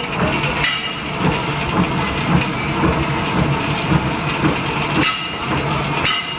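Automatic batasa-making machine running with a steady mechanical rattle.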